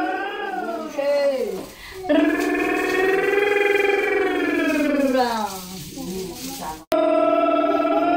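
A tied pig squealing in long drawn-out screams. The first fades about a second and a half in. A second starts suddenly about two seconds in and holds for over three seconds before falling away. A fresh scream starts abruptly after a brief break about seven seconds in.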